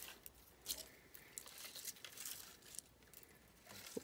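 Faint, intermittent rustling of crinkle-cut paper shred as fingers pick through it in a small paper box.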